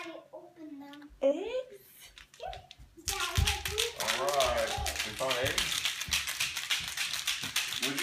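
Young children's voices, short calls and babble, over a busy household background; about three seconds in it turns suddenly louder and more cluttered, with many small clicks and taps.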